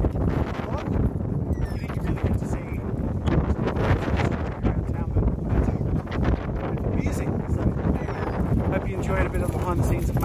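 A man talking, heavily garbled by wind buffeting the microphone.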